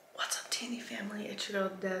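A woman speaking quietly to camera, half whispering.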